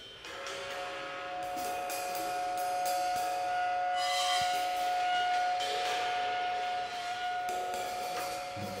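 Tenor saxophone holding one long note for about seven seconds, with cymbals washing behind it.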